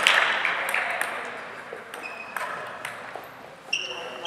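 The tail of applause dies away over the first second or so, leaving scattered light ping-pong ball taps and several short high-pitched squeaks, typical of sneakers on a hardwood gym floor, mostly in the second half.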